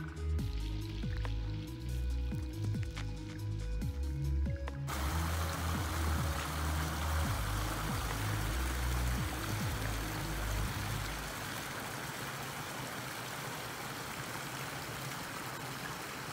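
Background music with low, steady notes. About five seconds in, the even rush of flowing creek water cuts in. The music drops away near eleven seconds, leaving only the water.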